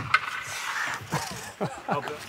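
A sharp knock at the start, then a clatter of hockey sticks and pucks on the ice, with faint voices behind.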